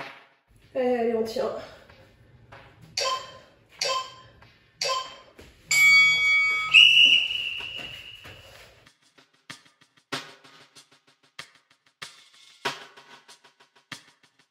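Workout interval timer counting down the end of a set: three short beeps a second apart, then a longer, louder tone as the work interval ends. Shortly before them, a brief vocal exclamation from the exerciser.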